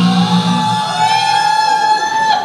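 A paper party blower sounds one long buzzy note that rises slightly in pitch. Under it, the singers' final low sung note fades out about a second in.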